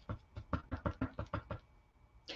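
A quick series of soft taps and clicks, about six a second.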